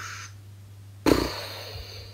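A woman's short breath in, then a sudden puff of breath out through pursed lips about a second in.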